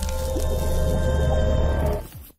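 Logo intro music: sustained tones over a heavy bass, layered with a wet splatter sound effect as a paint splat spreads.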